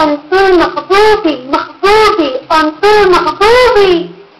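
A woman singing unaccompanied in a high voice: a string of short notes, each rising and then falling in pitch, with brief breaks between them.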